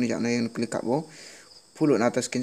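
A man's voice talking, breaking off about a second in for a short pause that holds only a faint high hiss, then starting again near the end.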